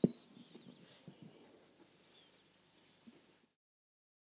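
A single sharp click of a handheld microphone being handled as it is passed to the next speaker, then faint room noise with a few faint high squeaks. The sound drops out to dead silence about three and a half seconds in.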